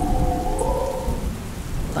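Rain and thunder sound effect: steady rain with a low rumble of thunder. A steady high hum runs under it and fades out about a second and a half in.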